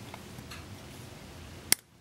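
Faint, steady scraping of a hand pin vise turning a fine drill bit through a small hole, then a single sharp click near the end.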